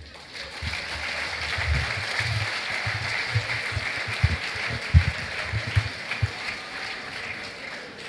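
A large audience applauding: the clapping builds up over the first couple of seconds, holds, and slowly dies away near the end.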